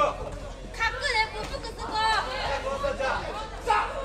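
Several high-pitched voices shouting and chattering over one another, with no clear words.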